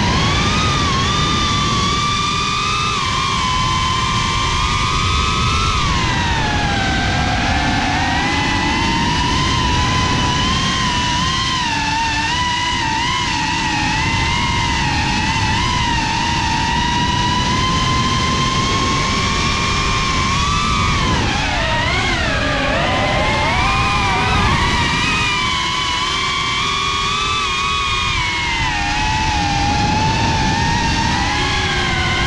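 Brushless motors and propellers of a GEPRC CineLog35 cinewhoop FPV drone whining in flight, the pitch rising and falling with the throttle, with a sharp drop and recovery about three-quarters of the way through. A rushing wind noise lies underneath.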